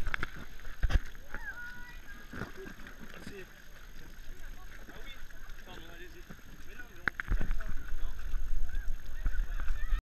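Thumps of bare feet on an inflatable water-park mat close to the camera, three sharp ones, with short high calls in the distance in between. A low rumble runs through the last few seconds.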